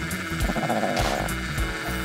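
Paperang 3.0 pocket thermal printer buzzing as it prints and feeds out a paper note, the rasp strongest from about half a second in to just past a second, over background music.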